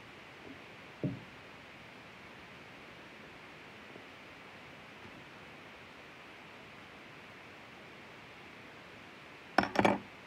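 Quiet room hiss, with one soft knock about a second in and a short burst of clattering handling noise near the end, from scissors and the object being cut.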